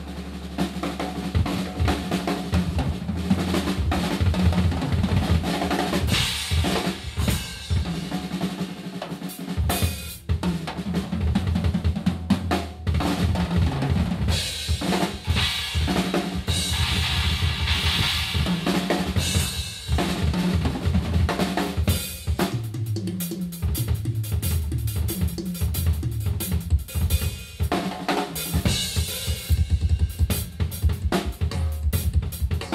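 Gretsch acoustic drum kit played as a solo: dense, fast strokes on bass drum, snare and toms throughout, with stretches of cymbal wash about six seconds in and again in the middle.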